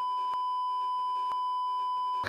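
Censor bleep: a single steady, high beep tone laid over the speaker's words to mask profanity.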